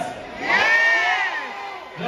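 Crowd cheering and whooping, rising sharply about half a second in and fading away over the next second.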